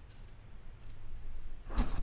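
Quiet handling noise over a low room rumble, then close, louder rustling and scraping near the end as things are moved around right by the microphone.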